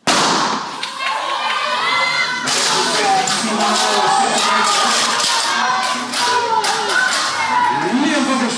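Spectators shouting and cheering during an indoor 60 m hurdles race, over a run of sharp knocks. It starts suddenly and loudly.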